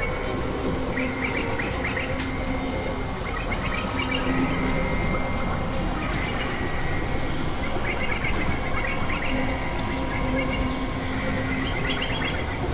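Experimental synthesizer noise music: a dense, noisy drone with several held tones, overlaid with recurring clusters of chirping bleeps. A high steady tone enters about halfway through.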